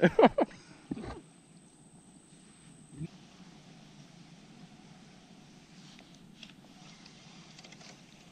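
A voice in the first second, then faint steady background noise, broken by a single short click about three seconds in.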